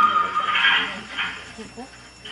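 A long horn blast held on one steady note, ending about half a second in, followed by a few low voices.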